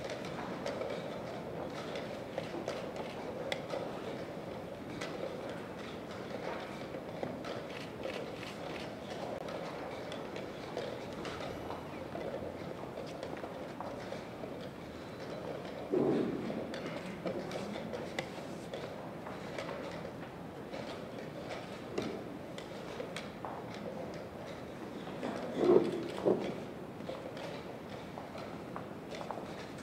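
Chess tournament hall ambience during blitz play: a steady background hum of the room with many light clacks and taps of pieces being moved and clocks being pressed, and footsteps. Two louder bumps stand out, about halfway through and near the end.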